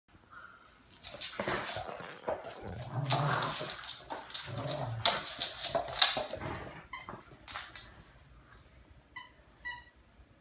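Rottweiler playing boisterously with a plush toy: dog vocal sounds mixed with thumps and scrabbling, busiest in the middle with a sharp thump about six seconds in. Near the end, two short high squeaks.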